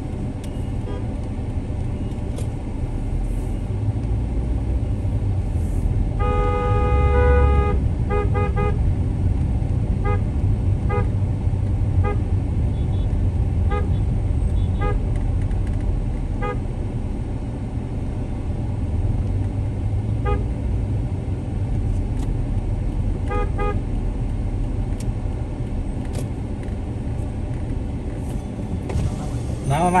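Steady low rumble of a vehicle driving along a town street, heard from inside it. About six seconds in a horn sounds one long blast, followed by many short toots of the same horn, in twos and threes, over the next fifteen seconds or so.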